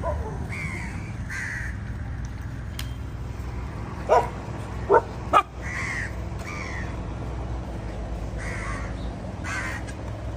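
Crows cawing repeatedly, a harsh call about every second, while a dog barks sharply three times about four to five and a half seconds in.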